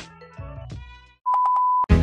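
Background music dies away, then a single steady electronic beep, like a censor bleep, sounds for about half a second. Loud new music cuts in right at the end.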